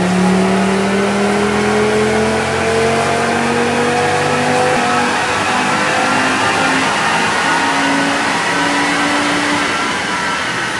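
Audi RS3 8V facelift's turbocharged 2.5-litre five-cylinder engine running hard on a chassis dyno. Its note rises slowly through the first half, then climbs in short steps.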